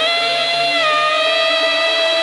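Saxophone holding one long note, scooped up into at the start, over an electronic dance backing with a steady beat.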